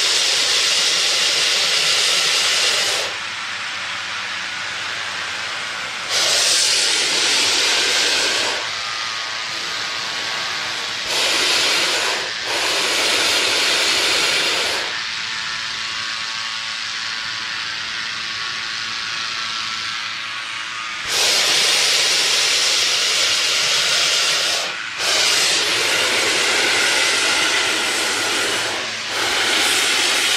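Hot air balloon propane burner firing in repeated loud blasts of two to four seconds each, a hissing rush. Between blasts a quieter steady mechanical noise carries on.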